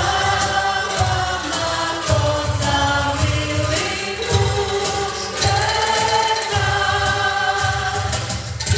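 Choir singing a slow hymn in long held notes that step from one pitch to the next.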